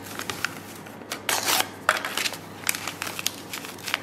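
Crinkling and rustling of single-serve protein powder packets being handled, torn and shaken out over a stainless steel bowl, in a string of short irregular rustles.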